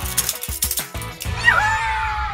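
Metal handcuffs clicking and clinking as they are unlocked and opened from a wrist, over background music. A falling tone comes in about a second and a half in.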